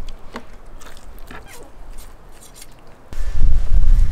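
Cleaver trimming the membrane off beef tenderloin on a wooden cutting board: a few faint knife clicks and scrapes, then about three seconds in a loud low rumble begins and becomes the loudest sound.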